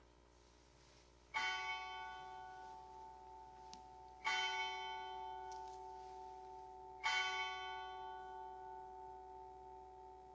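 A bell struck three times, about three seconds apart, each strike ringing on and slowly fading under the next.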